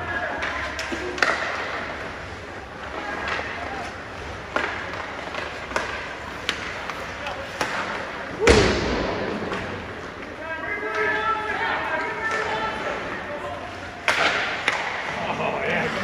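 Ice hockey play in a rink: scattered sharp clacks of sticks and puck, and about halfway a loud bang with a ringing tail as something hits the boards.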